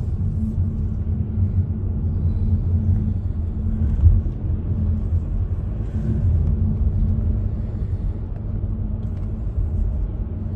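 Steady low rumble of a car driving at motorway speed, heard from inside the cabin: tyre and engine noise, with a brief thump about four seconds in.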